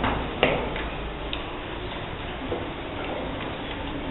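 Small wooden abacus beads clicking as children flick them with their fingers while calculating: a few short, sharp clicks, the loudest about half a second in, over a steady background hiss.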